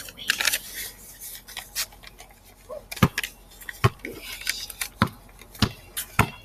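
A basketball bounced on pavement, a series of sharp thuds at irregular gaps of about a second, starting about halfway through; before that, light rustling and handling clicks.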